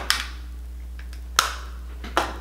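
Sharp clicks of makeup products being handled: one right at the start and another about a second and a half in, each dying away quickly.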